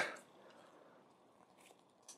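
Near silence: room tone, with one faint tick near the end.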